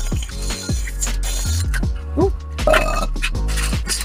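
Background music with a steady beat and deep bass notes.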